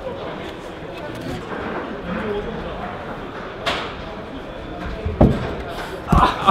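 Hall noise of an indoor bouldering gym with faint background voices, a sharp slap a little before four seconds in, and a heavy thud near the end, as a climber's body and feet hit the wall while he catches the holds.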